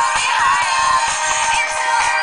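Pop music with a singing voice playing from the Sony Ericsson Xperia Arc's built-in loudspeaker, sounding thin with almost no bass.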